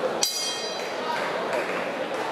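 Boxing ring bell struck once, with a high ringing that fades within about half a second, signalling the start of the third round. Crowd chatter runs underneath.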